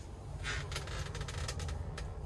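Faint rustling and a few light clicks over a low steady rumble: handling noise as the camera is moved about.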